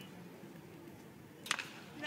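Faint ballpark ambience, then about one and a half seconds in a single sharp crack of a bat meeting a pitched baseball: a hard-hit, crushed ball.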